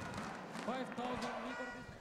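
A faint, distant voice over the arena's background noise.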